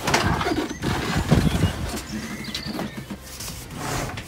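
VW Transporter front seat being turned by hand on its swivel base: a series of irregular knocks, clicks and rubbing as the seat is wiggled and rotated, strongest near the start and about a second and a half in.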